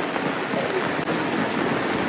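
Heavy rain falling steadily, splashing on the ground and surfaces around.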